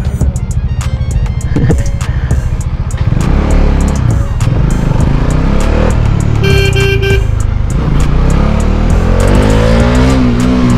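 Kawasaki Z900 motorcycle with a loud aftermarket exhaust, running as it rides through traffic, its pitch rising near the end as it speeds up. A horn sounds briefly about two-thirds of the way through, and background music plays underneath.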